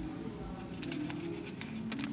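A pigeon cooing, low and wavering, with a few light clicks in the second half.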